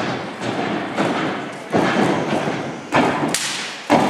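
A gymnast's hands and feet thudding on a sprung tumbling track during a run of back handsprings (flips) and whips. There are several sharp thuds roughly a second apart, the loudest near the end, each with a short echo.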